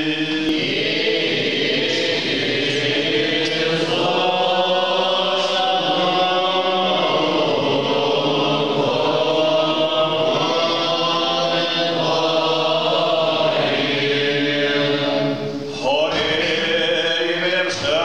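Church choir singing slow, sustained Orthodox liturgical chant in several voices, with a brief break about three-quarters of the way through before the voices come back in.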